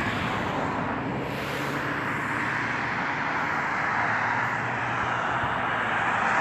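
Steady rushing vehicle noise with a faint low hum underneath, swelling slightly toward the end.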